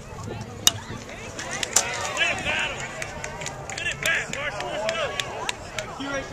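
A baseball pitch smacking into the catcher's mitt with one sharp pop about half a second in, and another sharp smack about a second later. Spectators' voices then call out over the field.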